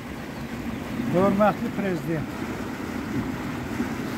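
Steady rush of water churning through a concrete irrigation canal. A voice speaks briefly about a second in.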